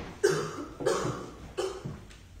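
A person coughing three times in quick succession, each cough sharp at the start and trailing off.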